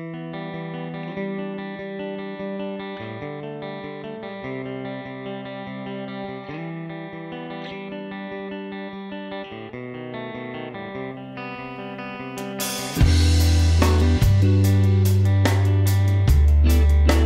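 Electric guitar played through modelled virtual amps on an audio interface, held notes and chords in a fairly clean tone. About thirteen seconds in, a much louder, fuller passage with heavy bass and sharp drum-like hits comes in.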